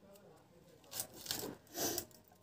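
An onion being cut against the upright curved blade of a boti: three short scraping crunches, about a second in, at 1.4 s and near the end.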